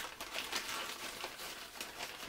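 Clear plastic bag crinkling and rustling as it is handled, a continuous run of small crackles.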